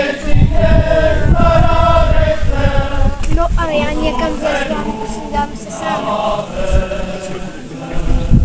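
A group of voices singing a folk song together in long held notes.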